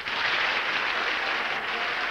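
Studio audience applauding steadily.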